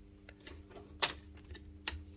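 Contactors and an overload relay in a pump control panel clicking twice, about a second in and near the end, as the booster pump circuit is tripped for testing. A steady electrical hum runs underneath.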